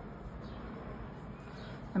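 A pause in speech: quiet, steady background noise with no distinct sound events, and a woman's voice starting at the very end.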